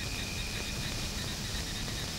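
Steady hiss from an old film soundtrack, with a faint, steady high-pitched tone running through it.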